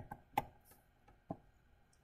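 Two short taps about a second apart: a stylus striking a tablet screen while writing.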